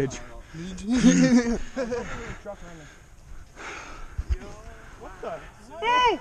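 Men's voices talking and calling out in several short stretches, the words indistinct.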